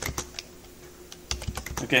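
Typing on a computer keyboard: a few keystrokes just after the start, then a quick run of keystrokes about a second and a half in.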